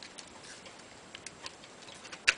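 Faint, scattered light clicks of a lamp socket's switch and metal shell being handled as the switch is pushed out of the shell.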